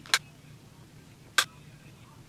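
Two sharp plastic clicks about a second and a quarter apart, from makeup compact cases being handled.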